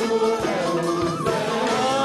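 Live Arabic orchestral music, violins carrying the melody, with a male voice singing over the orchestra.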